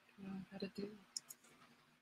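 A brief, faint murmur of a voice, a few syllables too low to make out, followed a little over a second in by two sharp clicks in quick succession.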